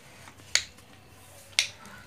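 Two sharp clicks about a second apart from a child eating rice by hand, the loudest sounds present.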